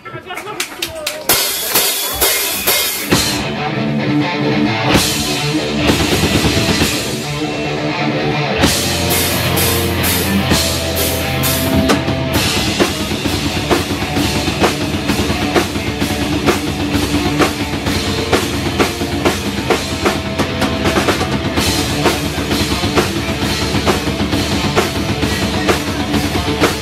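Live rock band playing: drum and cymbal hits open the song, and about eight seconds in the bass and full band come in with a steady, driving rock beat.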